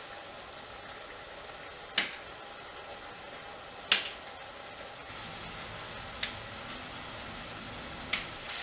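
Turkey browning in olive oil in a pot, a steady low sizzle, with three sharp taps of a knife against a plate about two seconds apart as soft canned sweet potato is cut; the last tap is fainter.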